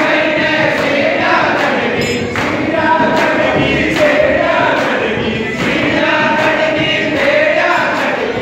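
A group of men singing together in unison, with a hand-held frame drum beating a steady rhythm.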